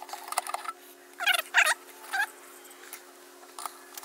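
A high-pitched, squeaky, chipmunk-like voice, speech that has been sped up, in three short bursts, with a faint steady hum beneath it.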